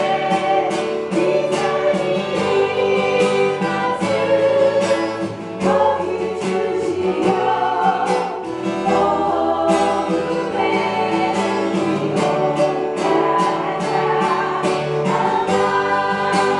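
A congregation singing a worship song together, accompanied by a strummed acoustic guitar with a steady beat.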